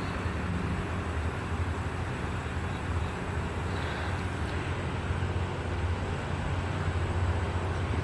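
Steady low mechanical hum with a faint even hiss over it: outdoor background noise, with no distinct event.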